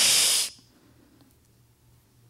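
A woman's voiced hiss into a stage microphone, imitating a small critter's noise: one sharp, breathy hiss lasting about half a second.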